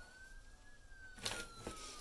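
A faint siren, one slow wail rising and then falling in pitch, over quiet room tone; about a second in, a short crinkle of a plastic pouch being picked up.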